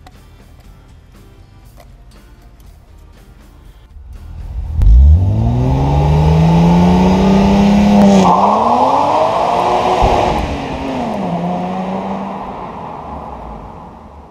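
Faint background music, then a BMW M Roadster's straight-six engine accelerating hard away: the revs climb steeply, drop at a gear change about eight seconds in and climb again, then fall back and hold before fading out as the car draws away.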